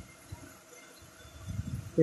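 A pen writing on notebook paper: faint, soft scrapes and light knocks, a little busier near the end.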